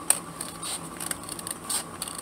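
Scissors snipping through a paper envelope: a few short cuts, with a sharp click just after the start.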